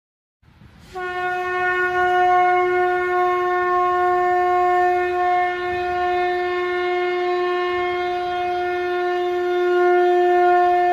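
A single sustained musical tone, held at one steady pitch, starting about a second in.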